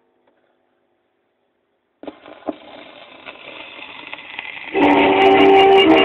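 Near silence, then about two seconds in a 78 rpm shellac record's surface hiss and crackle begin with a click, slowly growing louder. Near the end a small 1929 dance band starts playing a tango from the record.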